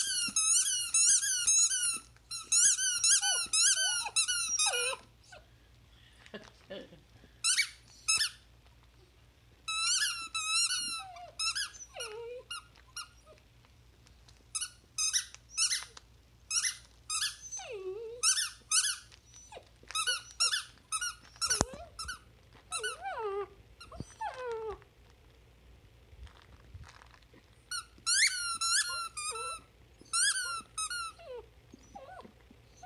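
Squeaker inside a plush dog toy squeaking as a Vizsla puppy chews it: quick high squeaks, several a second, in runs with short pauses between.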